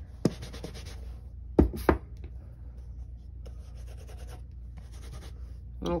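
Clear photopolymer stamps being scrubbed back and forth on a damp Stampin' Scrub pad to clean off ink: a soft, repeated rubbing. Three sharp knocks come in the first two seconds as the stamps hit the pad.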